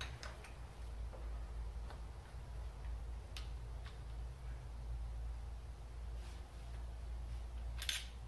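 A few faint, scattered metallic clicks of a box-end wrench and screwdriver on a rocker arm's lock nut and adjusting screw, as loose intake valve lash is tightened, over a steady low hum.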